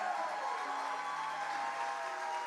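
Soft keyboard chords held under an audience applauding and cheering.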